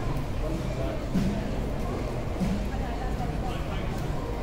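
Indistinct chatter of several nearby voices in a busy open pedestrian mall, with no words standing out.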